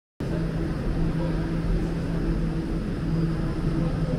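Subway station platform ambience: a steady rumble with a low droning hum that fades and returns several times.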